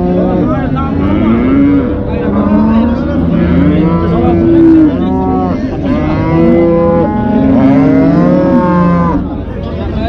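Cattle mooing again and again, several long calls overlapping one another, each arching up and then down in pitch.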